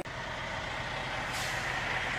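Semi-truck tractor's diesel engine running, heard from inside the cab as the truck moves off through the yard; a steady drone that grows slowly louder.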